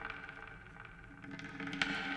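Quiet opening of an ambient music track: several held tones sounding together under scattered soft crackles and clicks, with a sharper click near the end.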